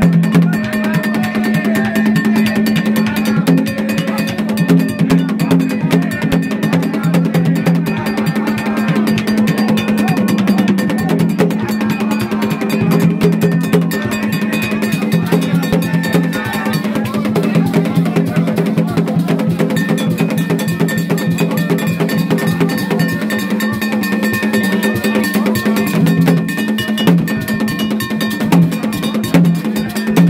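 Gagá music played live: dense drumming and metal percussion with a low droning tone that keeps stepping between two pitches.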